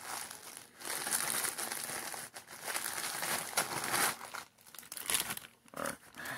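Clear plastic wrapping crinkling and rustling as a folded cloth apron is worked out of its plastic bag by hand. It comes in uneven rustles for about four seconds, then thins to a few short crackles.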